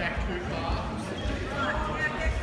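Indistinct voices of spectators and coaches in a large hall, with dull low thumps.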